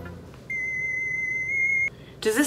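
A single electronic beep: one steady, high, pure tone lasting about a second and a half, starting about half a second in and cutting off abruptly. The tail of background music fades out just before it.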